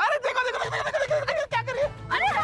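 High-pitched, excited voices whose pitch quickly rises and falls, starting abruptly and mixed with short clicks.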